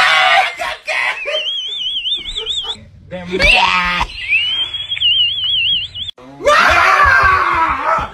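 People screaming in fright at scare pranks: a high, wavering shriek held for a couple of seconds, twice, a man's yell rising in pitch in between, and a loud burst of screaming and shouting near the end.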